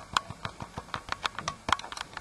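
Plastic toy train engines clicking and clattering as they are moved by hand across a card track mat: a quick, irregular run of sharp clicks.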